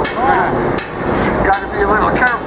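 A bullwhip cracking once, a sharp snap right at the start, with a man's voice after it.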